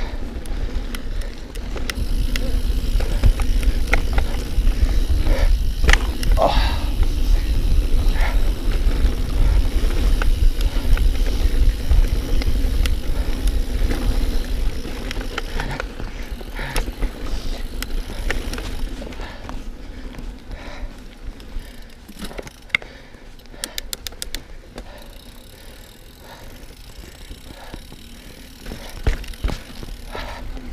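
A mountain bike riding fast down a dirt forest singletrack, heard through an action camera's microphone: a heavy rumble of rushing air and tyre noise, with the bike rattling and knocking over roots and bumps. It is loudest through the middle and eases after about twenty seconds, with a brief run of rapid ticks about three-quarters of the way through.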